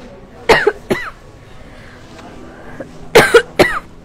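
A person coughing twice in quick succession, then twice more about two and a half seconds later.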